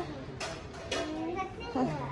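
A toddler's voice: short high-pitched vocal sounds about half a second in and again near the end.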